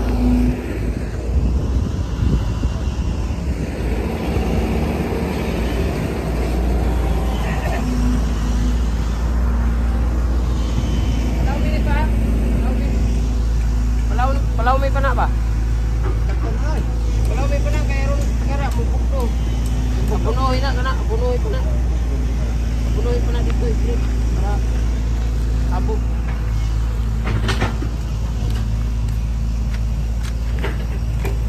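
Diesel engine of a Foton crawler excavator running with a steady low drone. People's voices come in partway through.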